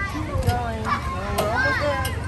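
Children's voices calling and chattering, high-pitched, over a steady low rumble.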